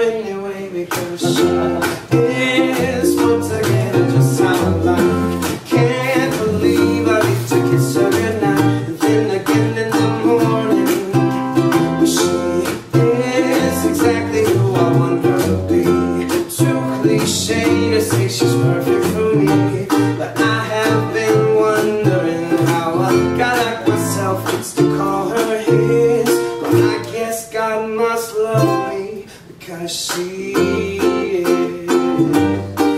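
Ukulele strummed in a steady rhythm through an acoustic song, with a stepping upright bass line underneath. The music dips briefly quieter near the end.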